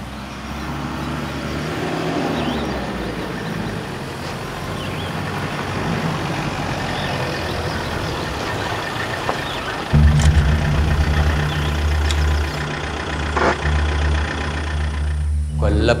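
Police SUV driving on a dirt track, its engine running, the sound building over the first few seconds. About ten seconds in, a much louder low rumble begins suddenly.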